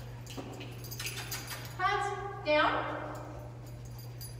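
Two short vocal cries, each held at a steady pitch, the first a little under two seconds in and a louder one right after it, over a steady low hum.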